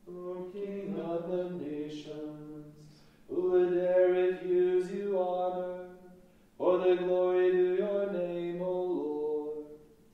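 Voices chanting psalmody on held reciting notes that step between a few pitches, in three phrases of about three seconds each with short breaths between them.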